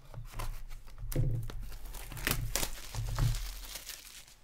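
Plastic shrink wrap on a sealed box of hockey cards being slit with a hobby knife and torn off, crinkling and ripping in a few short strokes.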